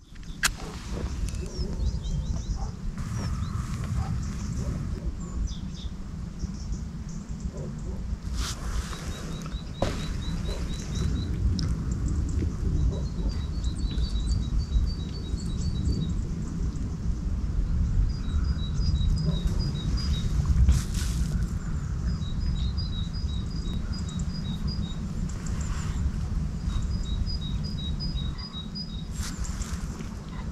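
Birds singing: runs of quick, high, evenly spaced pips, repeated every few seconds, over a loud steady low rumble.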